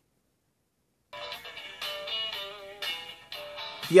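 Music played through a smartphone loudspeaker (the LG Stylo 2 Plus), starting about a second in, a melody of held notes.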